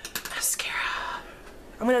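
A woman's brief, breathy whisper, with a few small clicks at its start. Near the end she begins to speak aloud.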